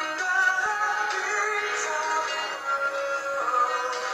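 Recorded rock ballad music playing back, with long, smoothly held melodic notes.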